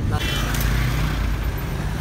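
A car's engine and road noise heard from inside the cabin while driving, a steady low rumble.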